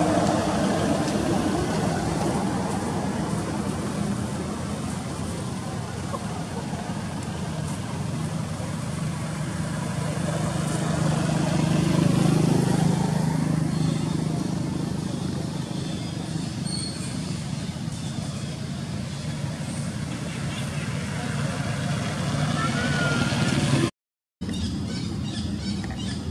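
Steady low engine hum of a nearby motor vehicle, a little louder around halfway, with indistinct voices over it.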